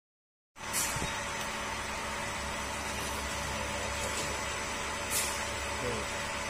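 Steady machinery hum of a factory workshop, with a few faint clicks. It cuts in abruptly about half a second in after dead silence.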